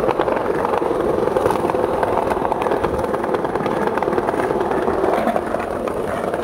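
Skateboard wheels rolling over a paved sidewalk: a steady, rough rumble with small clicks scattered through it.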